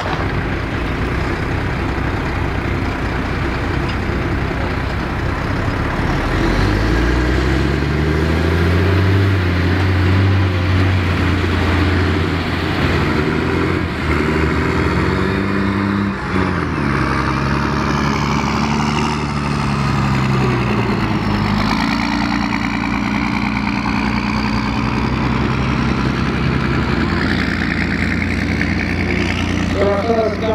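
Engines of old Scammell military trucks working under load through the dips of an off-road course, the engine note rising and falling repeatedly as they are driven up and over the mounds, then settling to a steadier run.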